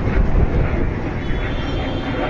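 Fighter jet's engine noise from overhead: a steady, dense rumble with no breaks.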